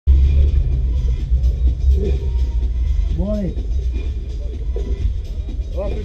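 A race car's engine idling with a steady low rumble, heard from inside its stripped-out cabin. A voice breaks in briefly about three seconds in and again near the end.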